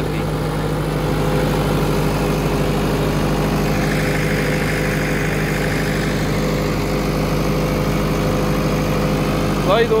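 Massey Ferguson 385 4x4 tractor's diesel engine running steadily under load while pulling a rotavator through the soil. A higher whine swells and fades in the middle.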